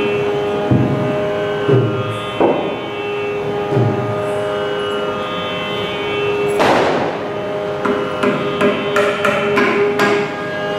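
Mridangam being played over a steady sruti drone. There are a few deep bass strokes in the first few seconds, then one sharp, ringing stroke about two-thirds of the way through, followed by a quick run of strokes near the end.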